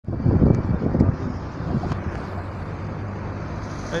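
City street traffic: a steady hum of engines and road noise, with a louder low rumbling through the first second or so.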